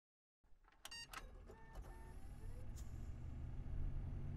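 Faint sound effects of an animated title sequence: a few sharp clicks and short beeping tones in the first two seconds, then a low rumble that swells steadily.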